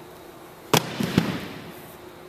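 A sharp bang about three quarters of a second in, a second hit about half a second later, then a short fading rumble.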